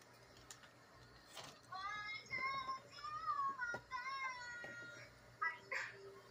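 A child singing improvised lyrics, played back through a computer's speaker and recorded off the screen. The singing starts about two seconds in and stops a little over two seconds later, and a short sound follows near the end.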